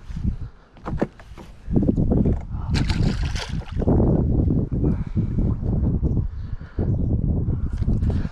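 Water splashing and sloshing close to the microphone as a small largemouth bass is let go back into the lake at the rocks, with a low, uneven rumble over it.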